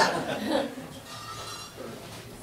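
Light chuckling laughter that trails off within the first second, leaving quiet room sound.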